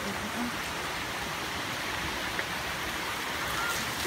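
Steady rain falling, a constant even hiss.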